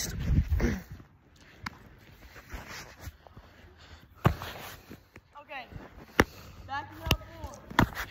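A baseball game of catch with leather gloves: a few sharp pops in the second half as the ball smacks into the glove and is handled, with brief distant shouts.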